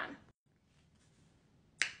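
Near silence, then a single sharp finger snap near the end.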